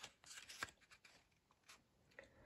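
Faint rustling and light taps of a paper picture-book page being turned and settled in the hand during the first part, then near silence.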